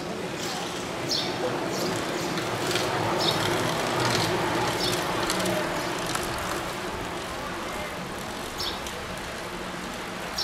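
A pack of track racing bicycles rolling past on the velodrome, their tyres and chains giving a steady whir that swells about three to five seconds in, over indistinct voices and a few short, sharp high sounds.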